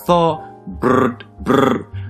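Three short, drawn-out vocal sounds from a voice over background guitar music.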